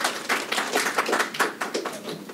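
Small audience applauding: quick individual hand claps, thinning out near the end.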